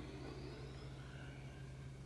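Faint steady low hum and hiss: the background noise of the recording, with no distinct sound event.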